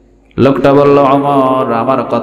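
A man's voice chanting into a microphone in a melodic, drawn-out tone, starting abruptly about a third of a second in after a brief hush, with long held notes that bend in pitch.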